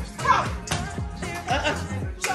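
Women shouting and cheering excitedly over music with a steady bass-drum beat.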